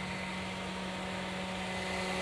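A steady machine hum at one fixed pitch with a few overtones, over a faint hiss, holding level throughout.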